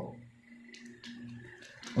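Faint crinkling of the clear plastic bag around a model-kit parts runner as it is handled, a few light rustles about a second in, over a faint low hum.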